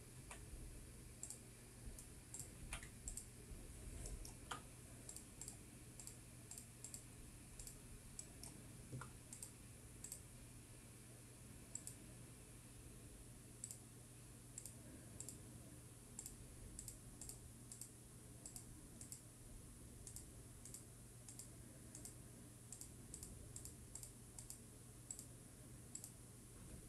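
Faint, irregular clicking from a computer mouse and keyboard, a few clicks a second with pauses between, as knife-tool points are placed and shortcut keys are pressed. A low steady hum runs underneath.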